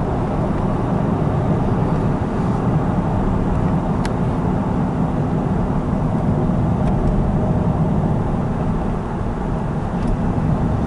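Steady road and engine noise heard inside a moving car's cabin, a low even drone, with one faint click about four seconds in.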